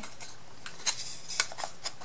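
Thin wooden kit pieces being handled and fitted together: a handful of faint, short clicks and taps as the tabs and edges knock against each other.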